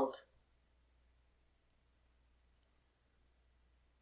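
Near silence with two faint, very short computer mouse clicks, a little under a second apart.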